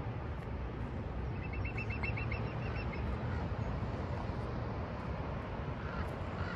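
Steady low rumble of wind and distant surf. About a second and a half in, a small bird gives a rapid run of about ten short high notes lasting about a second and a half.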